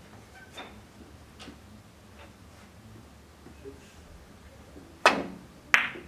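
Three-cushion carom billiards shot: two sharp clicks of cue and balls about 0.7 s apart near the end, with a few faint taps before.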